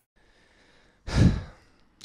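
A man's single sigh, a breathy exhale about a second in that fades within half a second.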